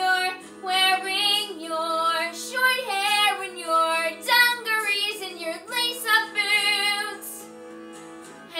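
A 13-year-old girl's solo voice singing a musical-theatre ballad over held instrumental accompaniment. Her voice drops out briefly near the end while the accompaniment holds on.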